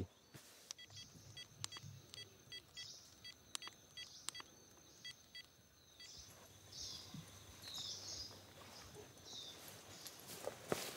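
Handheld GPS unit giving a series of short electronic key beeps, about a dozen over the first six seconds, some with a light click of the buttons, as a location is being saved. After that, a few faint high scratchy sounds.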